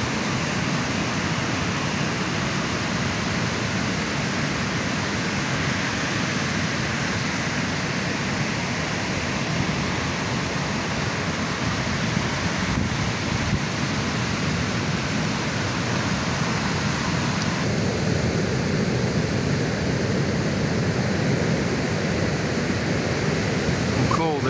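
Ocean surf breaking on a beach: a steady wash of waves, with some wind noise on the microphone.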